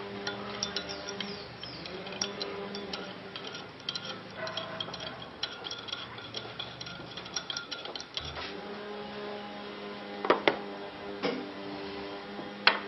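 Metal teaspoon clinking against a ceramic coffee cup as sugar is stirred in: a quick run of small clinks for most of the time, then two louder knocks near the end. Low background music runs underneath.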